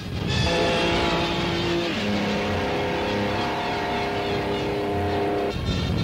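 Racing car engine running at speed under background music, whose held chords change every second or two. Near the end the chords stop and the engine noise is left.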